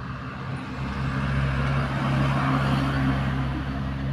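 A truck driving past on the road, its engine running steadily. It gets louder over the first two to three seconds, then starts to fade.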